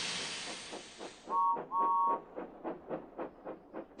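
Cartoon steam locomotive sound effects: a hiss of steam, then two short toots of a two-note whistle a little over a second in, followed by quick, even chuffing, several puffs a second.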